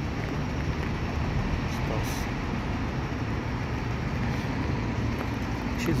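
Steady low rumble of nearby road traffic.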